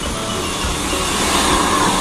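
A coach bus engine running as the bus pulls slowly forward, a steady, loud mechanical noise.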